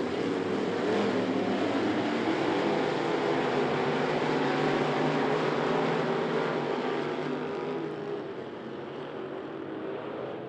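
A field of street stock race cars' V8 engines running together at race speed on a dirt track, a steady engine sound that fades somewhat in the last few seconds.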